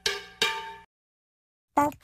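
Two struck, bell-like metallic percussion notes about half a second apart, each ringing and fading quickly, dying away before the first second is out.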